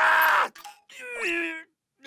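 A cartoon wolf character's voice: a loud scream, then a wail that slides down in pitch about a second in.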